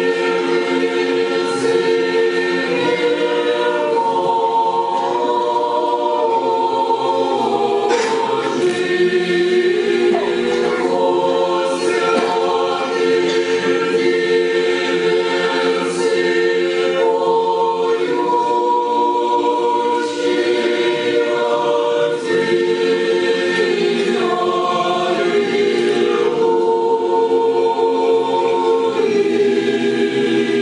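Church choir singing Orthodox liturgical chant a cappella, in long held chords that shift every few seconds.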